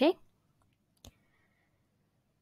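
The tail of a spoken word, then a single short click about a second in, a computer mouse click advancing the presentation slide.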